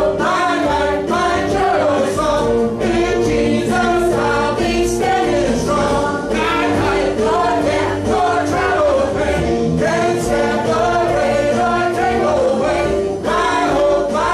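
Congregational worship song: lead singers on microphones and the congregation singing together over keyboard accompaniment, steady held chords under the voices throughout.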